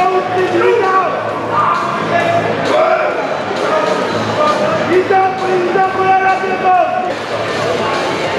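Voices calling out over music, some calls held for a second or more.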